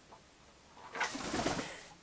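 Almost silent, then about a second in a soft, rushing flutter of a male eclectus parrot's wings as it flies in and lands on a shoulder.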